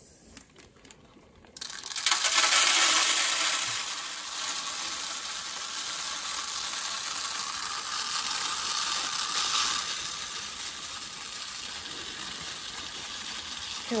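Green coffee beans being poured into a wire-mesh roasting drum: a continuous rattling pour that starts suddenly about a second and a half in, loudest at first and then steady. The load is about a kilogram.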